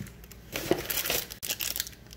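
Thin plastic bag crinkling as it is picked up and handled, starting about half a second in.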